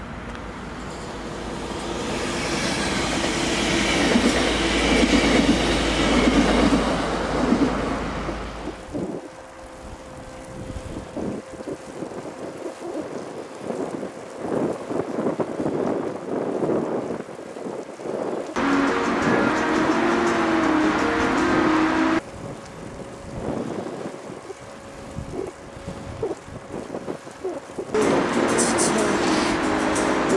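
A train running on the rails, its rumble and rail noise swelling over the first few seconds and stopping suddenly about nine seconds in.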